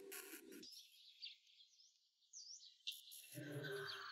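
Faint bird chirps, a few short dipping calls, over very quiet outdoor background sound.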